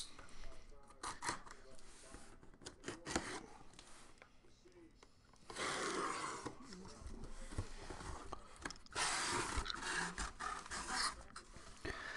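Cardboard shipping case being opened by hand: scattered clicks and scrapes, then two longer rasping stretches as the packing tape is cut and torn and the cardboard flaps are pulled apart.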